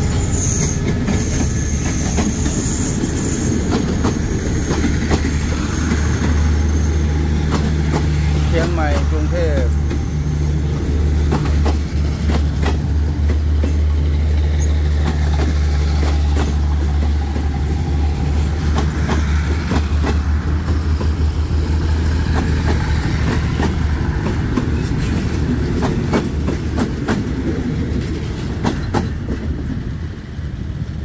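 A diesel-hauled passenger train passing close by: steel wheels clicking over rail joints as coach after coach goes past, with a steady low drone in the middle as the auxiliary power car's generator passes. The sound eases near the end as the train draws away.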